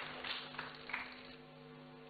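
Applause and cheering from an audience in a hall, dying away, over a steady low hum.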